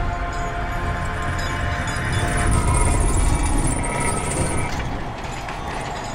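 Film sound design of a huge alien spacecraft: a heavy, continuous rumble and mechanical grinding, with steady tones of film music under it. A high hiss rises over it in the middle of the stretch.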